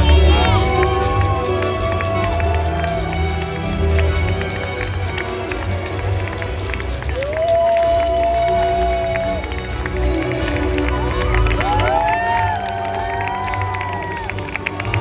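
Ballroom dance music playing through an arena PA, with spectators calling out long drawn-out cheers over it near the start, in the middle and again near the end; the middle call is the loudest.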